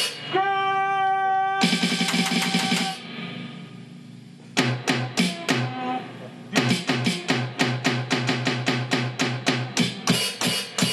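Yamaha DD-5 digital drum pad struck with drumsticks, playing sampled drum-kit sounds. It opens with a held pitched note, then a burst of beats, a lull, and from about two-thirds of the way in a steady fast beat.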